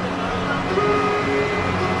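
Pause in amplified speech: a steady low hum and background noise from the sound system, with a few faint held tones lasting under a second about midway.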